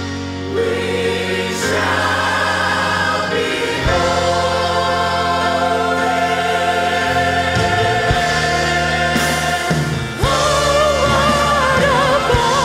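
Church choir singing a gospel song in long held chords with vibrato, accompanied by an orchestra of woodwinds and brass; the chord changes about four seconds in and again just after ten seconds.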